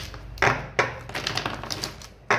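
Plastic felt-tip marker pens clacking against each other as a bundle of them is shuffled in the hands: two sharp clacks under a second in, then a run of quicker, lighter clicks.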